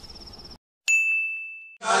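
Crickets chirping in a steady high trill, cut off abruptly by a moment of dead silence, then a single ding sound effect: one clear bell-like tone that strikes sharply and fades over about a second.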